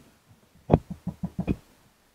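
One sharp click about three-quarters of a second in, then a quick run of lighter taps, from the hard plastic seat-back trim being handled.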